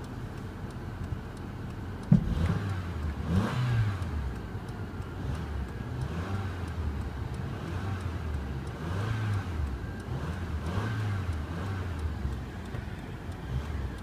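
2005 Honda Accord's 2.4-litre four-cylinder engine running, with a sharp click about two seconds in, then revved up and down several times.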